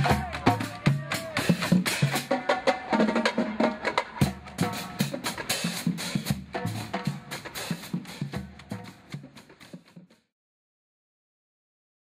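Marching band drumline playing a cadence on snare and tenor drums, with sharp rim clicks and voices mixed in. It fades out over the last few seconds and stops about ten seconds in.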